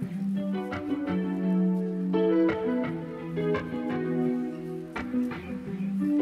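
Instrumental background music: a melody of plucked notes over sustained lower notes, changing about once a second.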